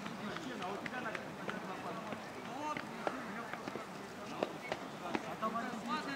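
Many men's voices talking and calling over one another at a distance, no single speaker clear, with a few sharp clicks scattered through.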